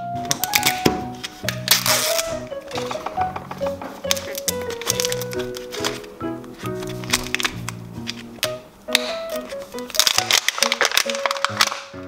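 Background music playing a steady melody, over the crinkling and tearing of an L.O.L. Surprise ball's plastic wrapping as it is peeled open by hand. The crackling is thickest in the first couple of seconds and again near the end.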